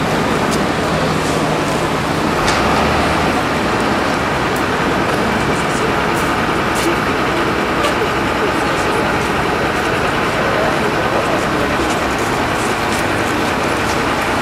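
Steady city street traffic noise with people talking in the background.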